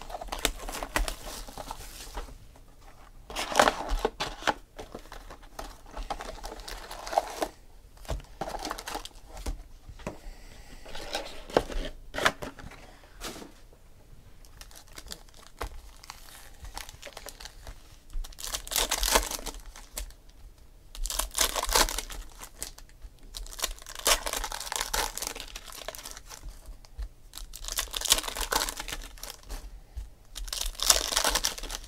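Foil trading-card pack wrappers being torn open and crinkled by hand, in irregular bursts with short pauses between packs.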